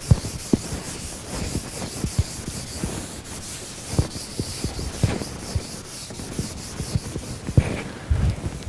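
Chalk being worked on a chalkboard: irregular scratchy strokes with sharp taps as the chalk meets the board.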